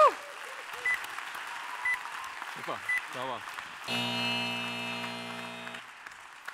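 An audience claps and someone whoops at the start. Short high beeps sound about once a second for the first three seconds, and about four seconds in a low, buzzy held tone lasts about two seconds.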